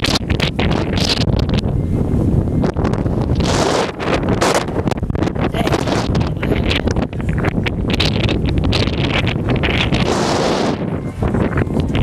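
Strong wind blowing across the microphone: a loud, continuous rumble with uneven gusts of hiss surging over it.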